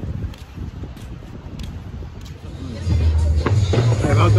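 Sandals slapping on a wooden boardwalk about every two-thirds of a second over a low wind rumble on the microphone. About three seconds in this cuts to loud music with a heavy bass beat and voices.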